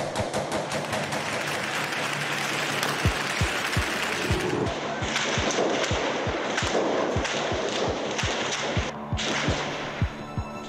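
Gunfire in a street battle: sharp shots coming a few a second and at uneven spacing from about three seconds in, over a steady noisy din.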